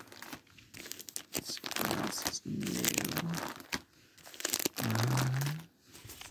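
Plastic crinkling and rustling with scattered sharp clicks and taps, from disc cases being handled and shuffled.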